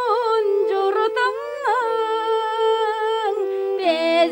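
Tuvan folk song: a wordless, humming vocal melody that glides over a steady held drone.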